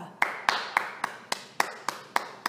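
A single person clapping in a steady, even rhythm: about seven claps at three to four a second.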